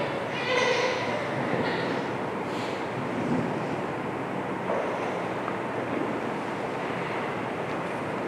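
Steady rushing background noise with no clear rhythm or tone, and a short bit of voice in the first second.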